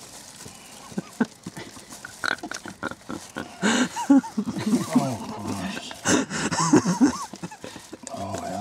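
Paper wrapper rustling and crinkling as a filled bread roll is unwrapped and handled, with short wordless murmurs that rise and fall in pitch from about halfway.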